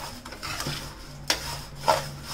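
Steel spoon stirring dry flattened rice (aval) being roasted in a stainless steel pan: rasping scrapes of the flakes against the metal. A few sharper strokes come through, the loudest about a second and a half in and near the end.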